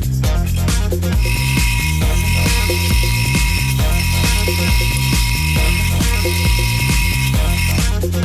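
Background electronic music with a steady beat, over which a drill press runs with a steady tone from about a second in until just before the end, boring into a wooden board with a Forstner bit.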